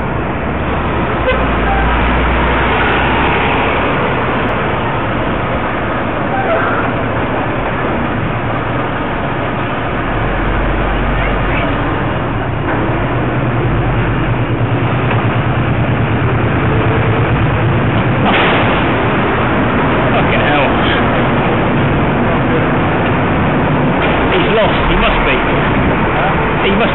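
Street traffic heard from a cyclist's helmet camera, with wind noise on the microphone and a heavy goods vehicle's engine running close by, loudest around the middle.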